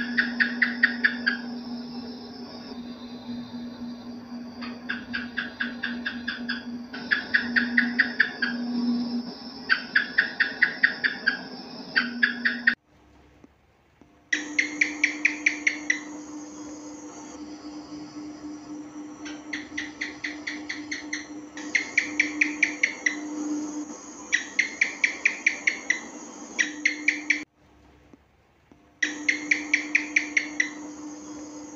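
House gecko (cicak) chirping: runs of rapid clicks, about ten a second, repeating every couple of seconds over a steady low hum. The sound breaks off briefly twice, near the middle and near the end.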